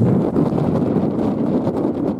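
Wind buffeting the microphone: a steady, fairly loud low rumbling noise.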